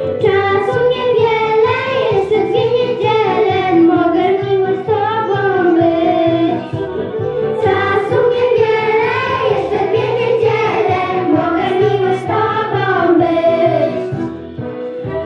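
A group of young girls singing a song together into microphones, the melody rising and falling in held notes, over recorded backing music with a steady low beat.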